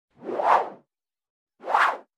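Two whoosh sound effects, each a short swell of noise that rises and falls away. The first comes near the start and the second, shorter one just before the end.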